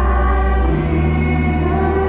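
A woman singing live into a handheld microphone, holding long notes, over instrumental accompaniment whose low bass note changes about a second in.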